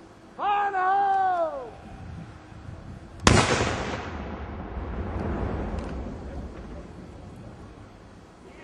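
Uncovered half-pound binary explosive charge detonating about three seconds in: one sharp blast, followed by a rumble that fades away over about four seconds. A shouted call comes before it.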